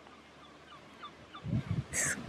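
Faint, scattered bird calls over a quiet background, with a short low murmur of a voice near the end.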